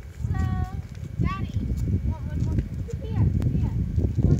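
Wind buffeting the microphone as a rough, gusting low rumble. Over it come four short high-pitched calls: one level, one rising and falling, one wavering and one falling.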